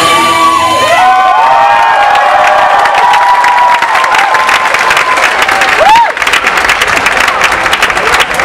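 Audience cheering and whooping at the end of a dance piece, with the music stopping within the first second. Applause swells near the end.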